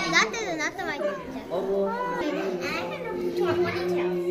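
Women and children chattering and laughing, with a burst of laughter in the first second.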